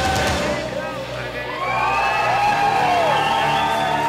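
Live pop music heard from among a concert audience: a singer's long, sliding held notes over sustained accompaniment, with crowd noise.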